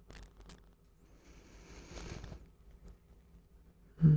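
Faint soft rustling with a few small clicks near the start, swelling for about a second in the middle and then fading.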